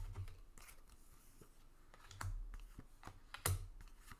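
Tarot cards being handled and dealt onto a table: scattered sharp card clicks and soft taps, the loudest about three and a half seconds in.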